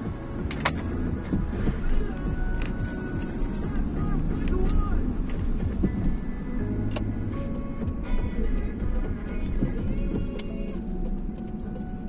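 Pop song with sung vocals playing from the car radio, over the steady low rumble of the car driving along.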